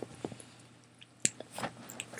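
Quiet chewing of a soft chocolate chip muffin, with a couple of small mouth clicks a little past the middle.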